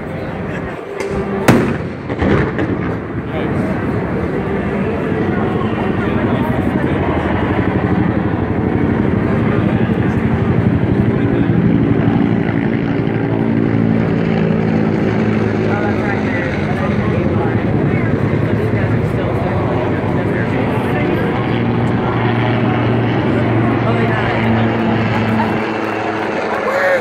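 A loud bang about one and a half seconds in and a smaller one just after, then a steady heavy engine drone that builds over the next several seconds and holds.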